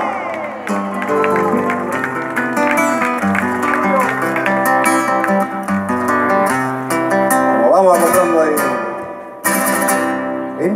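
Amplified acoustic guitars playing an instrumental passage between sung verses, a run of quickly changing plucked and strummed notes. About eight seconds in a voice briefly calls out over the guitars.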